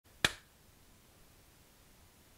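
A single sharp hand clap about a quarter of a second in.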